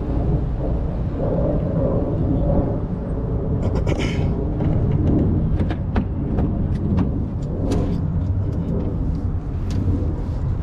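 Steady low rumble of a car running nearby, with scattered sharp clicks and knocks through the middle.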